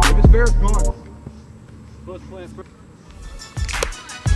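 Background music with a heavy bass beat and sung or rapped vocals that cuts off about a second in, leaving quieter live game sound with a shout of "go"; the music comes back in near the end.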